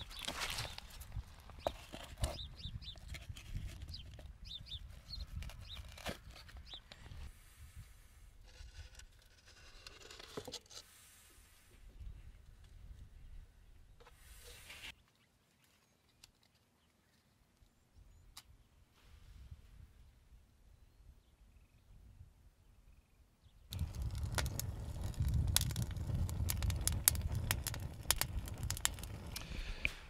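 Wind buffeting the microphone outdoors, with scattered light knocks and clatter of scrap lumber pieces being picked up and handled. The middle stretch is near silence, and the wind picks up again near the end.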